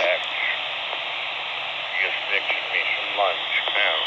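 Handheld FM radio's speaker playing a weak repeater signal: a steady hiss with faint, broken voices buried in it, too weak to make out. This is the sign of a marginal signal at the edge of range.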